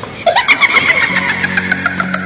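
An engine starting and then running steadily, its low hum settling in about a second in, with sharp clicks and sweeping tones over it.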